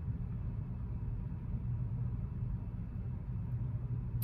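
Steady low rumble with a faint hum, unchanging throughout.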